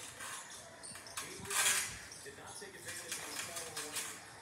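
Television broadcast of a basketball game heard in a room: faint commentary over background noise, with a short loud hiss of noise about a second and a half in.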